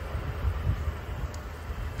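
A pause in speech with only a low, uneven background rumble and faint hiss; no distinct event stands out.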